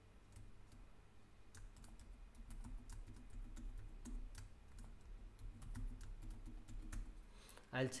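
Computer keyboard keys clicking as a password is typed in and then typed again to confirm it: a run of light, irregular keystrokes.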